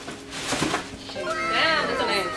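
Soft rustling and knocking of packaging as a sneaker is taken out, then several people letting out a drawn-out, falling 'ooh' in reaction during the second half.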